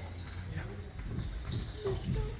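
Faint, indistinct voices over a low, steady hum of room noise.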